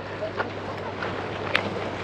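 Quayside harbour ambience: a steady low hum under wind noise on the microphone, with a couple of faint clicks.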